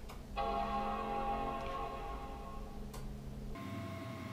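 Apple iMac G3 startup chime: one sustained chord that starts just after the beginning and slowly fades, cut off abruptly about three and a half seconds in, with a faint click shortly before. It sounds at power-on while Command-Option-P-R is held to reset the PRAM.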